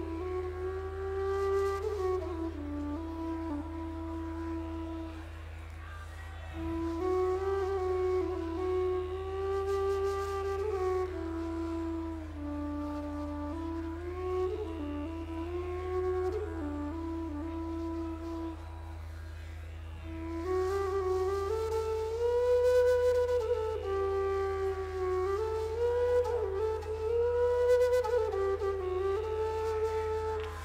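Two flutes playing a slow, calm melody live, with long held notes and short breaks between phrases, over a steady low drone.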